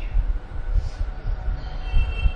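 A low, uneven rumble fills the pause in the talk, with a faint high tone near the end.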